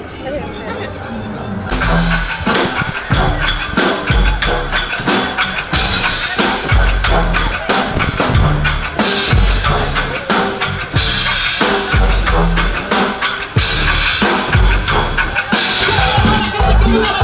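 Cumbia band music kicking in about two seconds in: a drum kit with a heavy kick drum and sharp rimshot hits keeping a steady dance beat.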